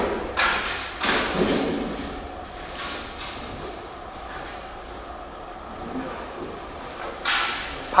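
Indistinct voices in a large room, with three brief rustling or knocking noises: near the start, about a second in, and about seven seconds in.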